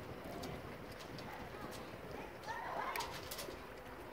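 A short bird call, a few quick wavering notes about two and a half seconds in, over a steady background hiss.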